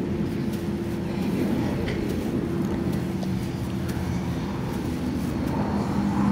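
A steady engine drone with a constant low hum, holding level throughout.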